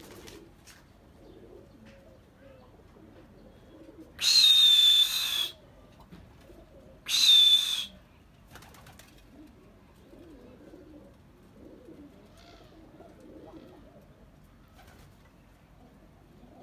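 Domestic pigeons cooing faintly and steadily. Two loud, hissing blasts carrying a high, slightly falling whistle come about four and seven seconds in.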